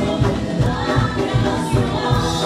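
Spanish-language gospel worship song sung by a group of voices over band accompaniment, with a steady low beat of about three pulses a second.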